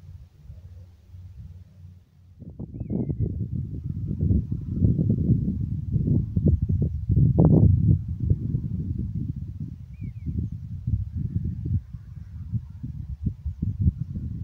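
Irregular low rumble of wind buffeting and handling noise on a phone microphone. It starts about two seconds in and eases near the end.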